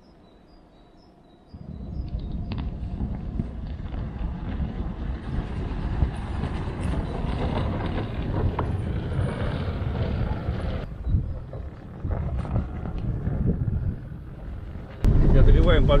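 Electric all-terrain vehicle on large low-pressure tyres driving over frozen snow close by, with a steady rumble of tyres and drivetrain and no combustion engine. It starts about a second and a half in and fades near eleven seconds. Near the end there is a sudden jump to louder sound inside the cab.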